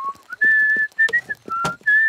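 A man whistling a tune of clear single notes, with a few sharp hammer knocks on wood as he sets about repairing a wooden boat's hull.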